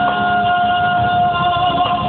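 Live pop ballad over a PA: a female singer holds one long high note above the band's backing, and the note moves near the end. The recording sounds dull, with its top end cut off.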